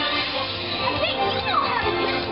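Parade music playing with children's voices calling out over it, several rising and falling calls about a second in.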